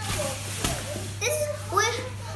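Young children playing with a large bean bag: a rustling rush and a soft thump about two-thirds of a second in, then a small boy's high-pitched voice calling out in the second half.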